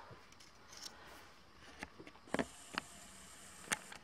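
Faint handling of a folded paper bow: a few short, sharp clicks and rustles of the paper in the hands, the loudest near the end.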